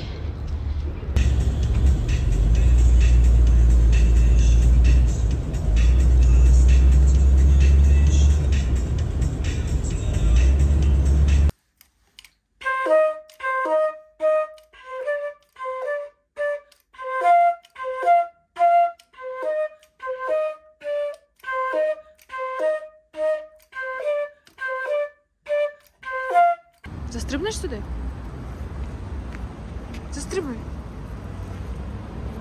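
A loud steady low rumble for the first eleven seconds or so cuts off abruptly. Then a silver concert flute plays a phrase of short, detached notes, about two a second, for roughly fifteen seconds before a low steady noise returns near the end.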